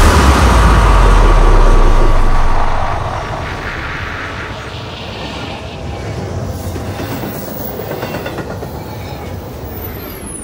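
Outro of an electronic dubstep track. A deep sustained bass note with noise over it fades out over the first three seconds, leaving a quieter noisy, rattling rumble of sound design.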